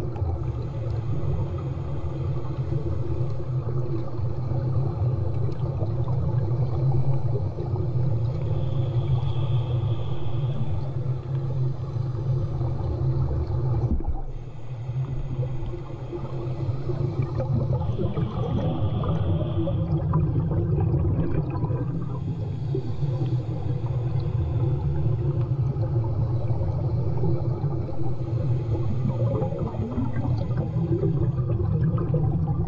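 Muffled underwater sound from a submerged microphone: a steady low rumble, with slow breaths drawn through a snorkel heard as a soft hiss every several seconds.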